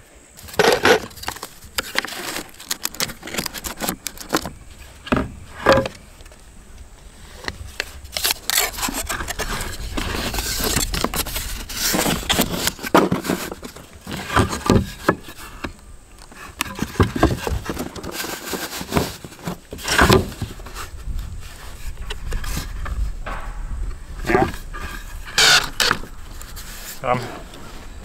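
Pine boards being handled and fitted around a vent pipe: scattered wooden knocks and scrapes as the pieces are shifted and set against one another on the roof.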